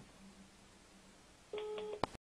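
Faint room hum, then about one and a half seconds in a steady telephone beep starts: a busy/hang-up tone, the sign that the other side has ended the call.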